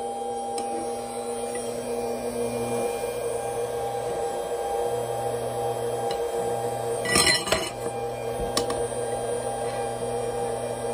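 Linear induction motor stator, laminated iron with copper coils fed by a variable-frequency drive, giving off a steady electrical hum with a higher whine over it. About seven seconds in there is a short metallic rattle as the aluminium plate held on the stator chatters against it.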